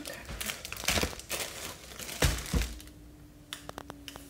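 Plastic bread bag crinkling as it is handled, with a loud low thump about two seconds in, then a few light clicks.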